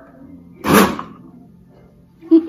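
A countertop blender run for a split second: one short, loud burst of motor noise about two-thirds of a second in, lasting under half a second.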